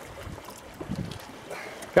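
Wind buffeting the microphone over open water around a small boat, with a few soft knocks about halfway through.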